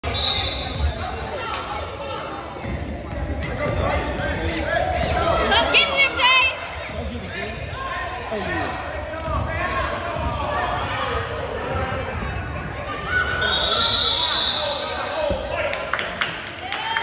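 Basketballs bouncing repeatedly on a hardwood gym floor, with children's voices and calls echoing around a large gym.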